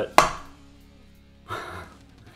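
A cup full of acrylic paint flipped over and set down onto a stretched canvas: one sharp knock, quickly dying away.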